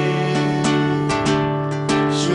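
Worship music with a strummed acoustic guitar, its chords struck every fraction of a second over sustained notes.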